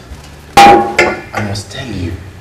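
Two sharp glass knocks about half a second apart, the first the loudest and ringing briefly: a wine bottle and wine glass knocking against a glass tabletop.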